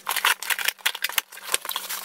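Scissors cutting through the packing tape of a cardboard shipping box: a quick run of crisp snips and scrapes, with plastic air-pillow packing rustling near the end.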